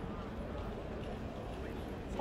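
Steady background noise of an open city square, with faint voices in the distance.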